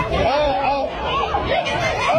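Several people's voices chattering and calling out over one another, with a faint crowd babble behind them.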